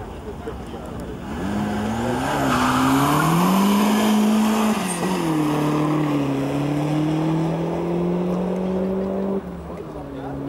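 Mk4 Ford Escort accelerating hard away from a standing start, its engine revving up through the first gear, dropping in pitch at a gear change about five seconds in, then pulling up slowly through the next gear before the sound falls away abruptly near the end.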